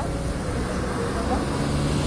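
Steady city street traffic noise: car engines and tyres on the road, with faint voices.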